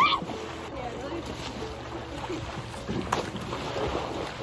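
A girl shrieks with laughter as pool water splashes up around her, followed by quieter churning and lapping of water in the swimming pool.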